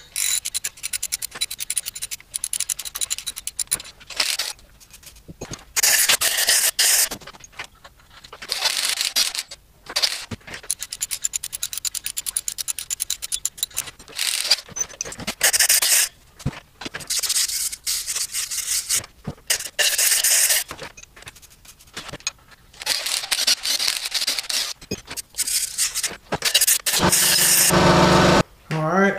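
A steel tap turned by hand in a deep head bolt hole of an aluminum LS V8 block: a fast run of small clicks and scraping for the first few seconds. After that come repeated short hissing bursts, each about a second long, as the tapped hole and its threads are cleaned out.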